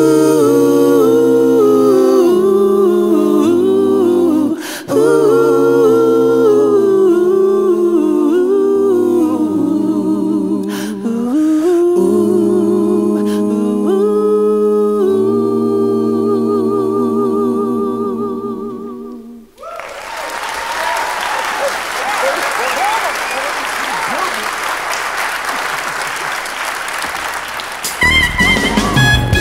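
Three voices holding close a cappella harmony chords, sustained notes with vibrato moving together in steps. About twenty seconds in the singing stops and is followed by audience applause and cheering.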